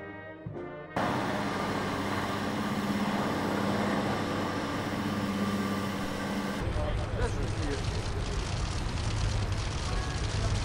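A brass band's music breaks off about a second in, giving way to steady engine noise with a held low hum. About two-thirds of the way through it changes to a deeper engine rumble.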